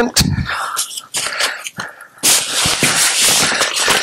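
Nylon backpack fabric rustling and scraping as a tent is stuffed into the pack, with a denser, louder stretch of rustling from about halfway through.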